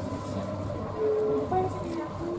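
Steady low rumble and hum of a passenger train heard from inside the carriage as it rolls slowly into a station, with a few brief held tones over it.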